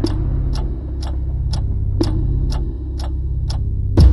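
Clock-ticking sound effect, about two even ticks a second, over a deep, steady drone.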